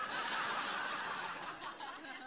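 Studio audience laughing at a sitcom punchline, a dense crowd laugh that fades away near the end.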